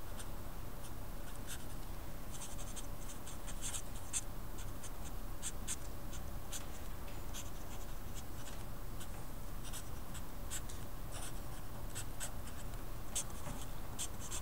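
Felt-tip marker writing on paper: short, scratchy strokes in quick, irregular runs, with a steady low hum beneath.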